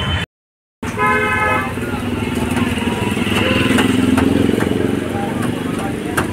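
Busy street traffic: a vehicle horn toots briefly about a second in, then a motorcycle engine runs steadily, loudest around the middle, over general traffic noise.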